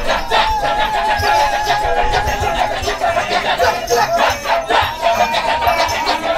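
Balinese Kecak chorus: many men chanting fast, interlocking "cak" syllables in rhythm, with a single held, wavering voice line sung above them.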